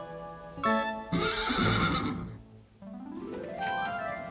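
Soundtrack music with short chords, then a horse whinnying for about a second, followed by a rising musical sweep into a new passage.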